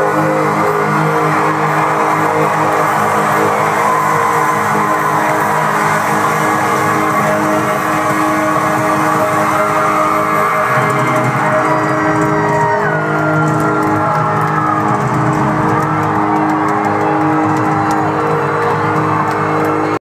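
Live country-rock band playing an instrumental passage, heard through a phone's microphone from the crowd: sustained chords under a lead line that slides up and down in pitch.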